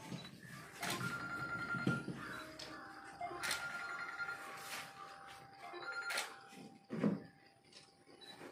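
Ringing tones: a short high ring comes three times, about a second in, about three and a half seconds in and near six seconds, over a longer, lower steady tone. A few sharp clicks fall among them.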